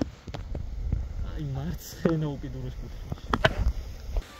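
A man's voice speaking briefly in short phrases, over a steady low rumble of wind on the microphone.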